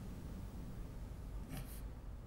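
Quiet room tone: a steady low hum, with a brief soft rustle about one and a half seconds in.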